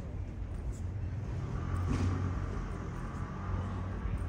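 City street traffic, a steady low rumble that swells briefly about halfway through as a vehicle passes.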